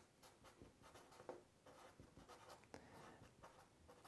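Faint scratching of a felt-tip marker writing words, in short strokes with small pauses between them.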